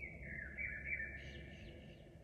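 A faint, high whistling tone that slides down in pitch and lasts about a second and a half.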